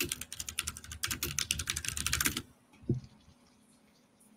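Computer keyboard typing: a quick run of keystrokes for about two and a half seconds, then a single further click about half a second later.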